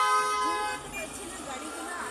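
A vehicle horn honks once, a steady tone lasting about a second, followed by traffic noise and voices.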